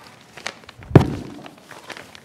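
A single dull thump about a second in, the loudest sound here, dying away over about half a second, with a few faint small knocks around it.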